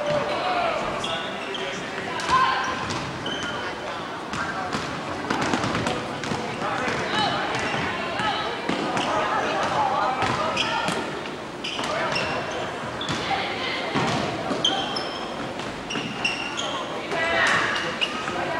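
Basketball bouncing on a hardwood gym floor during play, with short high sneaker squeaks and the voices of players and spectators calling out.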